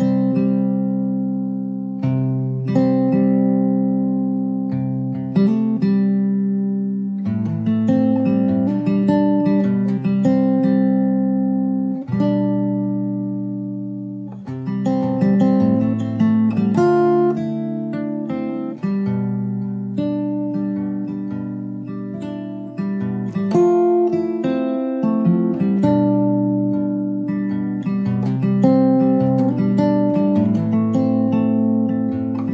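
Background music: a guitar playing plucked notes and chords, each struck note dying away before the next.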